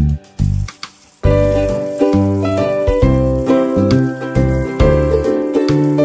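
Background music: a bright, jingly tune over regular bass notes. It drops out briefly just after the start and returns about a second in.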